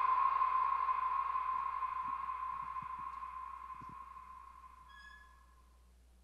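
A steady, high-pitched electronic tone over a soft hiss, fading out evenly over about five seconds to near silence.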